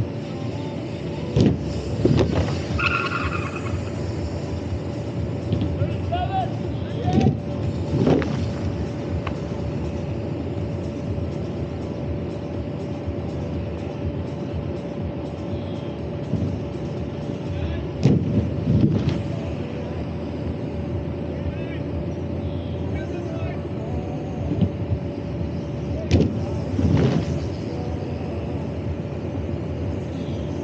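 Steady drone of a generator running the airbag lander's inflation blower, with a constant hum. Several louder bursts a few seconds apart break through it as BMX riders land on the inflated airbag.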